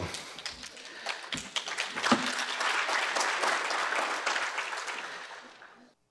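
Audience applauding: many hands clapping, building up about two seconds in, then fading out near the end.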